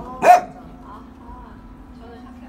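A small dog barks once, sharply, about a quarter second in.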